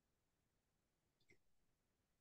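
Near silence: faint room tone, with one soft click just past the middle.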